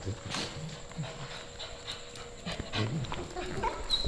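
A husky dog panting quietly.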